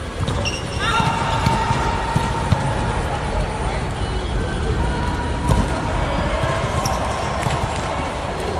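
Volleyball rally inside an air-supported dome: the ball struck and thumping a few times, with players calling out and short shoe squeaks on the court.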